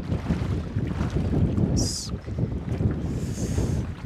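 Wind buffeting the microphone over open water, a rough low rumble, with a short sharp hiss about two seconds in and a softer hiss near the end.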